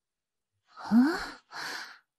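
A woman's short pained vocal cry, rising in pitch, followed by a breathy exhale.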